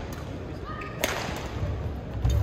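A badminton racket striking a shuttlecock once, about a second in: a single sharp crack.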